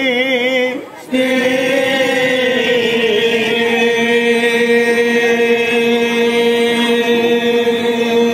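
Assamese nagara naam devotional singing by a male voice. It chants with a wide vibrato, breaks off briefly about a second in, then holds one long note that sags slightly in pitch around three seconds in and stays steady from there.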